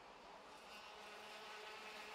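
Faint, buzzing whine of two-stroke OK-class racing kart engines on track, a few steady tones growing slightly louder.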